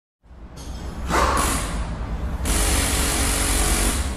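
Title-card intro sound effect: a rising whooshing noise over a deep rumble, with a louder swell about a second in and a steady hiss from about two and a half seconds in.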